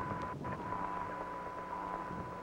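Open radio channel hiss with a faint steady high tone running through it: the background noise of the Apollo 7 air-to-ground voice loop between transmissions.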